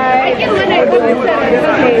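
Only speech: several voices talking over one another in lively chatter.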